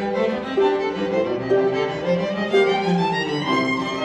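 Harp, violin and cello trio playing live, the bowed violin melody over cello and harp in a steady run of changing notes.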